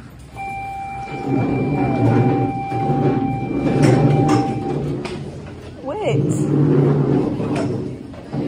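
Indistinct chatter of many voices in a school room, with a steady electronic tone held for about four seconds from just after the start, and a brief squealing rise and fall of a voice about six seconds in.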